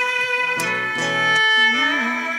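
Live acoustic music with no singing: acoustic guitars strumming chords, struck about every half second, under long held notes that sound like a bowed violin.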